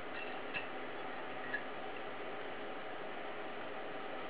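Two faint, small clicks over a steady background hiss as a glass tube is handled in a hot-wire glass cutter, glass touching the tool's metal frame.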